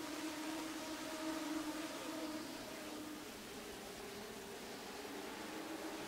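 A pack of Legends race cars running, heard as a faint, steady engine drone under hiss.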